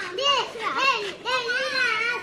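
Children's high-pitched voices calling out while they play, a run of short, sing-song phrases one after another.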